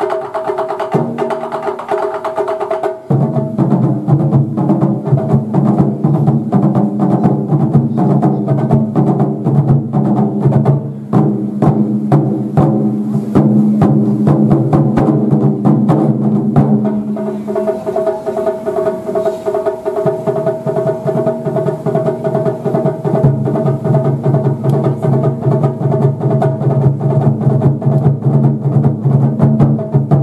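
Ensemble of Japanese taiko drums played live: dense, fast strikes on large barrel drums, mixed with the sharper hits of a small tightly-laced drum. The pattern changes about halfway through.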